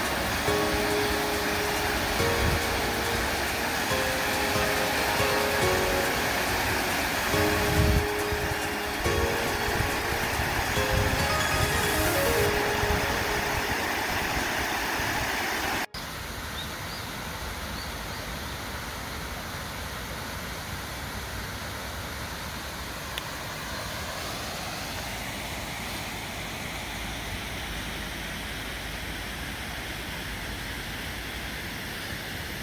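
Steady rush of a small stream pouring over a low rock cascade, with background music over it for the first half. After a sudden cut about halfway, a quieter, even flow of water continues.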